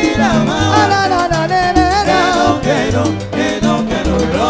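Live salsa band playing, with a bass line moving under a gliding melody.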